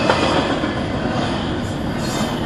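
Double-stack intermodal container freight train rolling past: a steady noise of steel wheels running on the rails.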